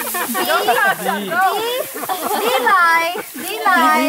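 Speech only: voices talking, one repeating "nice, nice, nice, nice".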